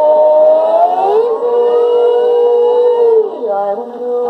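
A 1950s 78 rpm shellac record of an orchestra-and-chorus pop song playing on a portable acoustic gramophone. The music holds long notes with sliding pitches that rise together across the middle, then changes about three and a half seconds in.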